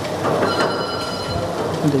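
A steel serving spoon scraping through a steel buffet tray gives a brief high metallic squeal from about half a second in, over a steady noisy background.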